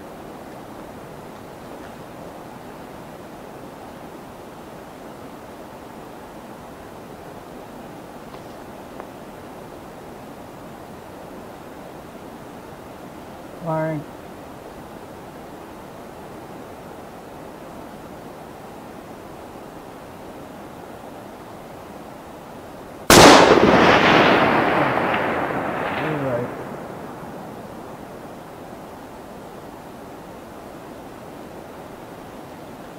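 A custom .308 Winchester rifle firing a single shot, a 180-grain Flatline handload: a sharp report about 23 seconds in that dies away over about three seconds.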